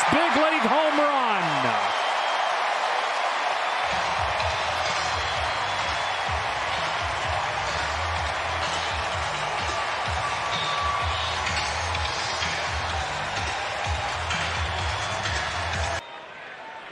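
Ballpark crowd cheering a home run, a dense steady roar with a few yells in the first two seconds. About four seconds in, stadium music with a deep bass beat starts up under the cheering.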